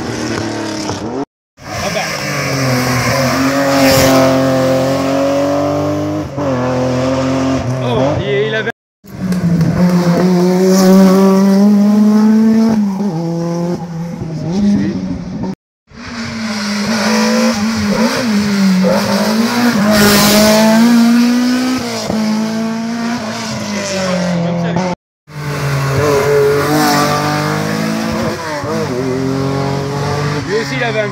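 Historic competition cars driven hard up a hill-climb road, one after another, each engine revving with its pitch rising and falling through the gear changes. The sound cuts off abruptly between cars four times.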